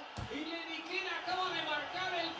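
Faint speech with a soft low thump just after the start.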